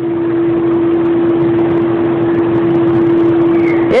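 A steady, unwavering single tone held over a loud even hiss, with no change in pitch until speech cuts in at the very end.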